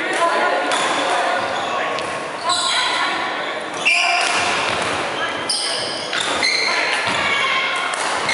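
Badminton play in a large echoing hall: rackets striking the shuttlecock and players' feet on the wooden court floor, in short sharp hits at uneven intervals, with voices in the background.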